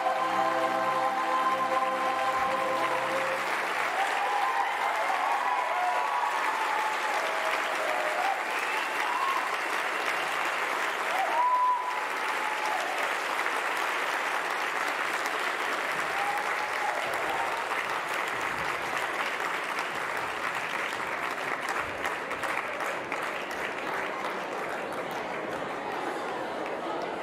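Theatre audience applauding and cheering after a musical's act-one finale; the final held chord of the music ends about three seconds in, and the clapping carries on, thinning slowly toward the end.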